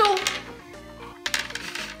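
A board-game die thrown onto a wooden tabletop, clattering in a quick run of sharp clicks for about half a second starting about a second and a half in.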